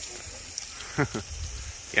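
Hose spray nozzle shooting a jet of hot water, a steady hiss, with a brief voice sound about a second in.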